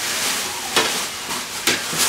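A thin plastic shopping bag crinkling and rustling as a hand rummages inside it, with a few sharper crackles.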